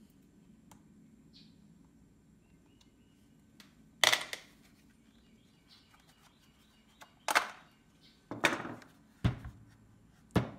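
Hard plastic snapping and clattering as the bottom end cap of an EGO 56V lithium battery pack is worked off by hand: one loud snap about four seconds in, then three more in quick succession over the last three seconds.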